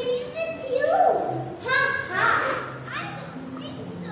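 Children's voices speaking lines into handheld microphones, in short high-pitched phrases through the hall's sound system.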